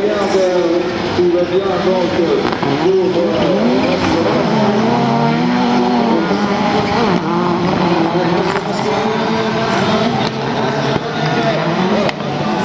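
Several touring autocross race cars running together on a dirt track, their engines revving up and dropping back through the gears with the pitches overlapping.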